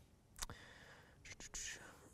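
Very quiet room with a short click about half a second in, then faint breathy, whispered sounds from a man near the end.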